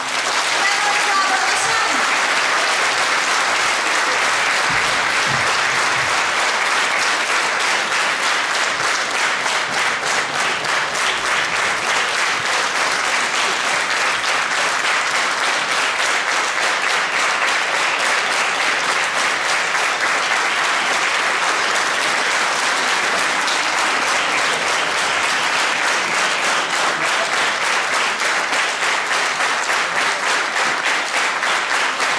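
A large concert audience applauding steadily. In the last few seconds the clapping falls into an even beat.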